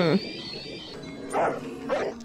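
A dog barking about one and a half seconds in, over music with a high held note.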